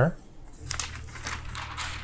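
Pages of a glossy paper catalog being turned and smoothed flat by hand: paper rustling and crinkling, starting about half a second in.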